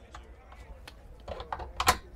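Light clicks and taps of a flush deck-hatch latch being worked by hand on a fiberglass boat deck, with a sharper click near the end.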